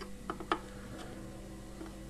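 Quiet room tone with a steady low hum and a few faint clicks in the first second, the sharpest about half a second in.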